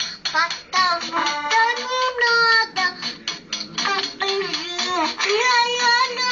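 A two-year-old girl singing in a high voice, with music playing behind her.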